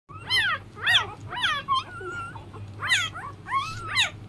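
Week-old border collie puppy crying in a series of high-pitched squeals, each rising then falling in pitch, with one held longer about two seconds in.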